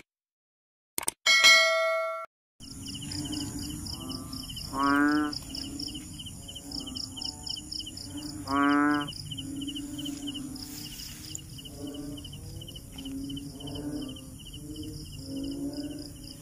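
A bright bell-like ding about a second and a half in. Then a night chorus of frogs: two loud, drawn-out calls of under a second each, about four seconds apart, with softer calls from other frogs between them, over steady pulsing insect trills.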